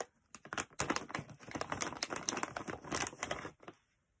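Plastic treat packaging crinkling and crackling as it is handled and a ring-shaped dog chew is taken out: a dense run of small crackles for about three seconds that stops shortly before the end.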